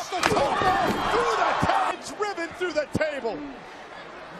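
A wrestler diving from the top rope crashes down onto an opponent lying on a table, one loud crack about a third of a second in. An arena crowd roars right after, and excited voices shout over it until the roar drops off about two seconds in.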